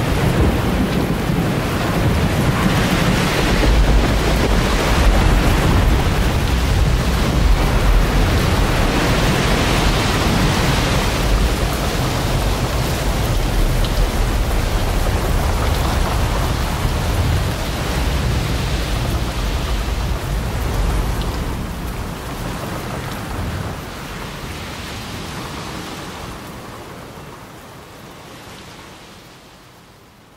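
A thunderstorm recording: steady heavy rain with low rumbles of thunder, loud at first and then fading out gradually over the last several seconds.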